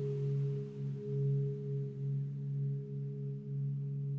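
Background meditation music: a low drone of a few steady held tones, gently swelling and fading about once a second.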